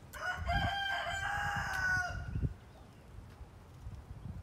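A rooster crowing once, a single crow of about two seconds that begins right at the start.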